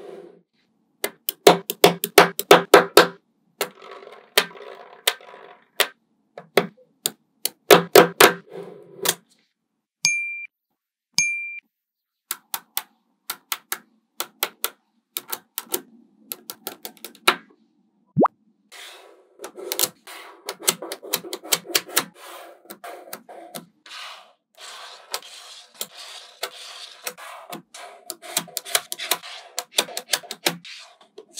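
Small magnetic balls clicking and clattering as they are snapped together and pulled apart by hand. The clicks come in quick bursts, and a stretch of continuous rattling and rubbing fills the second half.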